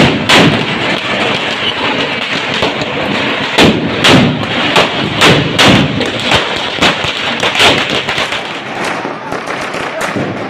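Firecrackers bursting in a rapid, irregular string of sharp bangs, the loudest ones bunched in the middle, over the steady noise of a crowd.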